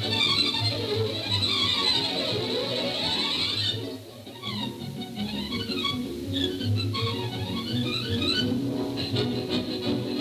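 Background orchestral music with strings, playing sweeping rising and falling runs; it dips briefly in level about four seconds in.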